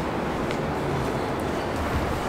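Steady city street noise: a low, even rumble of traffic with no distinct events.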